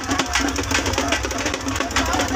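Drum-led procession band music with fast, dense, steady drumming, played for a Hindu idol-immersion procession.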